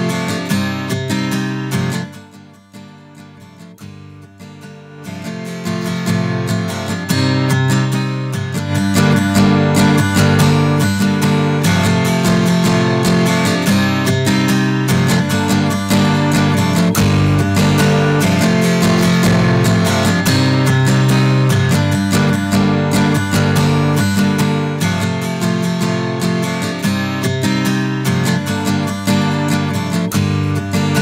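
Strummed guitar played back as a sample recorded through an SSL VHD 500-series microphone preamp. It drops quieter about two seconds in, builds back up from about five seconds, and keeps strumming steadily at full level.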